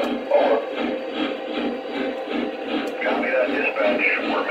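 Lionel Legacy Big Boy O-gauge model steam locomotive's onboard sound system playing through its small speaker as the engine approaches, with indistinct voice-like sounds in the mix.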